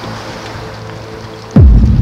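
Soft background music with held tones, then about one and a half seconds in a sudden loud dramatic music sting: a deep boom whose pitch sweeps downward, ringing on.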